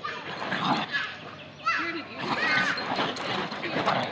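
A Bichon Frise giving a few short high-pitched yips and whines about halfway through, as it plays on a bean bag chair.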